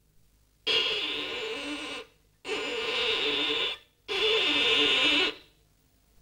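A violin scraped by an unskilled child: three harsh, screechy bow strokes of just over a second each, with no clear note.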